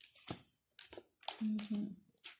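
A few brief soft rustles, then a woman's voice murmuring a short sound near the end.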